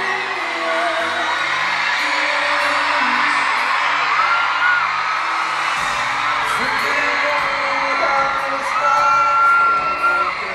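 Live pop song played over an arena sound system, recorded on a phone from the crowd, with the audience whooping and screaming throughout. Deeper bass comes in about six seconds in, and a long high held scream or note rises over the mix near the end.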